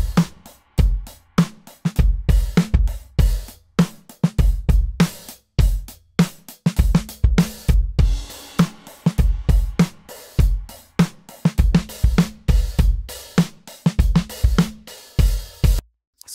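A drum loop of kick, snare and hi-hats plays through a spectral auto-panner. Only the top end is panned back and forth in a sine sweep, so the high frequencies seem to move while the lows and mids stay in place. The loop stops just before the end.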